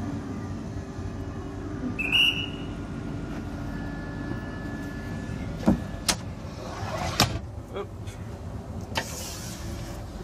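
Inside a train driver's cab: a steady low hum from the train's equipment, a short high electronic beep about two seconds in, and several sharp clicks of switches and buttons on the control desk between about five and a half and seven seconds, with a brief hiss near the end.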